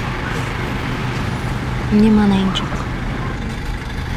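Steady low rumble of a bus engine and road noise heard from inside the passenger cabin, with a brief voice sound about halfway through.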